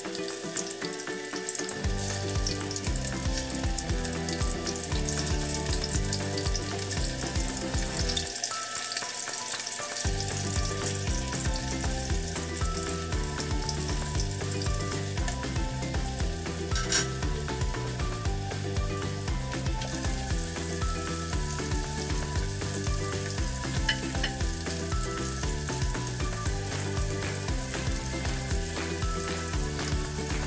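Chicken pieces sizzling as they fry in hot oil in a pan, a steady frying hiss, with background music playing over it. A single sharp click stands out about 17 seconds in.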